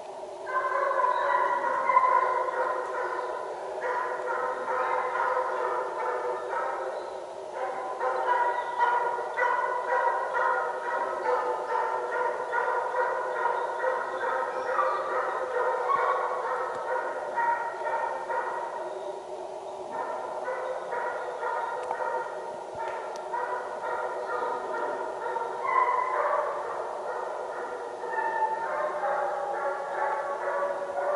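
Russian hounds giving voice in a continuous, drawn-out bay while running a hare on its track, coming in strongly about half a second in.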